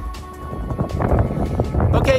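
Background music fading out, giving way to wind rumbling on the microphone that grows louder toward the end.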